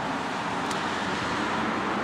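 Steady outdoor background noise, an even hiss with no distinct source, and one faint click about two thirds of a second in.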